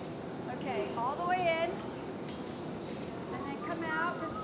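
Steady roar of a glass studio's gas-fired glory hole while a glowing gather is reheated inside it. Over it, a person's voice gives two short calls, the first and louder about a second in, the second near the end.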